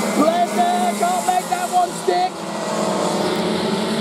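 Several racing kart engines running at speed together in a steady drone, with an excited voice over it for the first couple of seconds.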